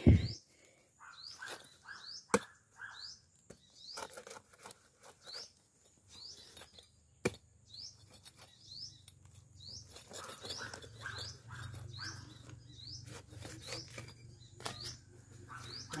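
A small bird repeating short rising chirps, about one or two a second. A machete blade chops heavily into a jackfruit right at the start, and there are two sharp knocks later on.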